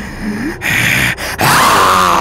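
A woman gasping loudly in fright, twice: a short sharp intake about half a second in, then a longer one near the end that starts to turn into a cry.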